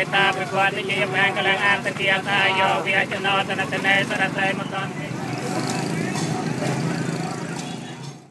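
Buddhist monks chanting a blessing in a wavering voice line, which gives way about five seconds in to the steady noise of street traffic.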